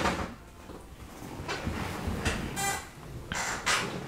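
Movement and handling noises: several short scuffs and rustles as a person shifts about in a leather desk chair.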